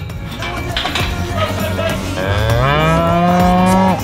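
A dairy heifer mooing: one long moo starting about two seconds in, rising in pitch and then held until it stops sharply.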